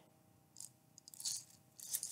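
Clear plastic container of colored toothpicks being handled and its lid worked open: a few short, scratchy plastic clicks and rustles, the last just before the end.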